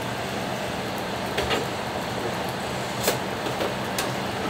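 Steady background hum of the room, with two faint light clicks of a spoon and ceramic cup on the wooden counter, about a second and a half in and again near three seconds.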